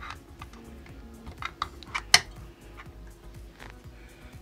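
AMD Wraith Prism cooler's metal retention clip being hooked onto the CPU mounting bracket's latch: a few light clicks, then one sharp click about two seconds in as it engages, over quiet background music.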